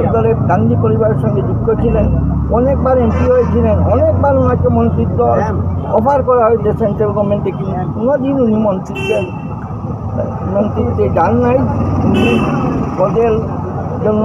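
A man speaking at length over a steady low rumble of passing vehicles.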